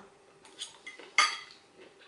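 Metal forks clinking and scraping against dinner plates: a few light clicks, with one louder clink a little over a second in.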